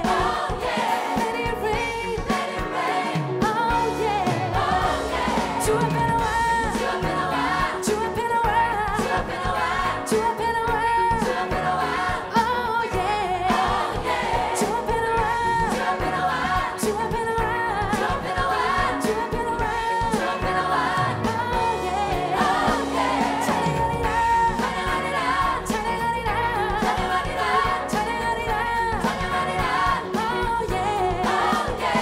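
Live gospel song: lead vocalists singing over a mass choir, backed by a full band with a steady beat.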